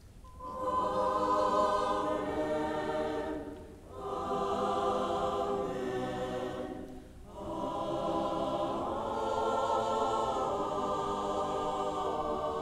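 Church choir singing a short sung response in three sustained phrases, with a brief breath pause between each.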